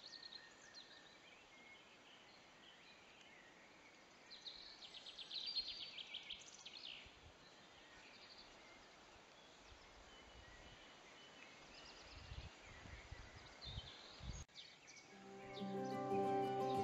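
Quiet outdoor ambience with songbirds singing: a run of fast repeated high notes about four to seven seconds in, and scattered chirps after. A few low bumps come near the end, then background music fades in.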